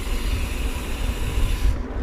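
Riding noise from a mountain bike rolling along a dirt trail: wind rumbling on the camera microphone with a steady hiss from the tyres. The hiss drops away shortly before the end.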